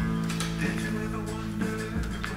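Recorded music with plucked guitar and sustained bass notes, played from a vinyl record on the turntable; it starts suddenly.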